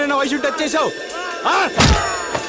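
Action-film fight score with sliding, swooping tones, cut by one heavy, booming hit sound effect near the end: a punch or blow landing.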